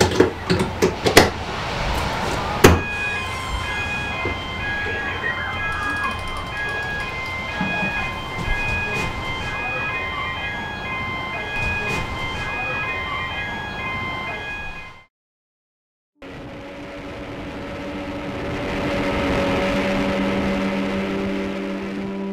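Knocks and clatter of a handset and desk gear being handled. Then an electronic call-out alarm beeps in a repeating pattern of several pitches for about twelve seconds and cuts off suddenly. After a second of silence, an inshore lifeboat's outboard engines drone at speed, growing louder and then easing as the boat passes.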